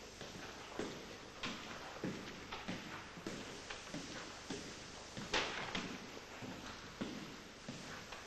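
Footsteps on a hard tiled corridor floor, about two steps a second, with one louder knock about five seconds in.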